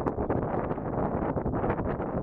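Wind blowing across the microphone: a continuous low rushing noise with scattered crackles.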